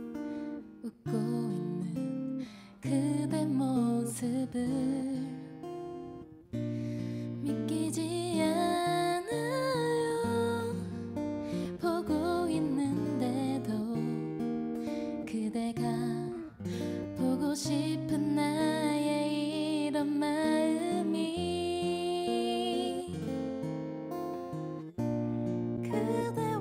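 Live pop ballad: a woman singing Korean lyrics into a microphone, with acoustic guitar and band accompaniment.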